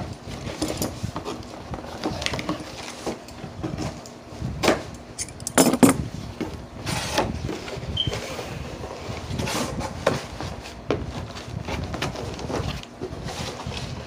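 A cardboard shipping box being opened by hand: scissors slitting the packing tape, then the flaps pulled open and the cardboard handled. It comes as irregular knocks, scrapes and rustles, loudest around six seconds in.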